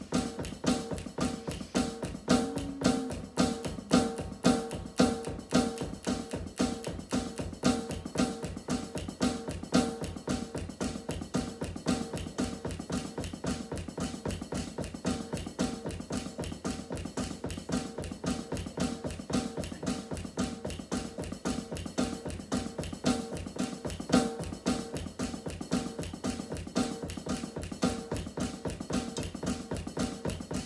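Drum kit played with wooden sticks in a steady, fast groove of many strokes a second, the hits carrying a few pitched tones; the loudest accents come a few seconds in.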